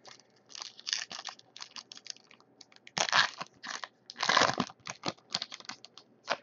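Foil trading-card pack wrapper crinkling and crackling as it is torn open by hand, with two longer, louder bursts about three and four and a half seconds in.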